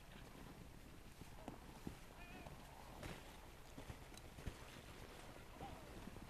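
Near silence: a faint low rumble of outdoor air with scattered small clicks and knocks.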